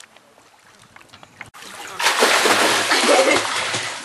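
Swimmers kicking and splashing in the water close by, starting suddenly about halfway through after a quiet stretch.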